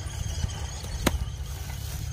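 A hand hoe strikes hard, dry paddy soil once, a sharp knock about a second in, over a steady low rumble.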